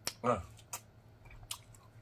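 A bite into a pineapple wedge, then chewing with a few sharp, separate wet mouth clicks.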